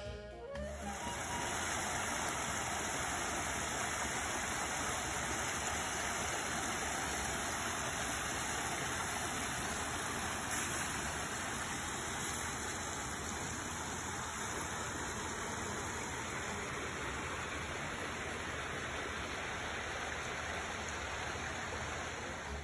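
A small woodland creek running over rocks: a steady, even rush of flowing water, starting about a second in.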